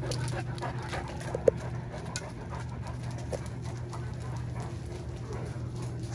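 Great Dane panting over a steady low hum, with one brief sharp sound about a second and a half in.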